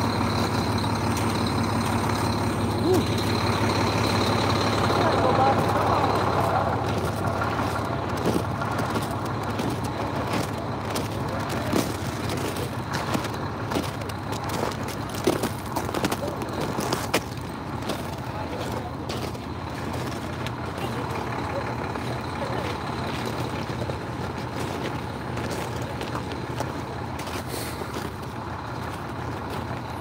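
Heavy diesel truck engine idling steadily, with scattered short clicks in the middle stretch.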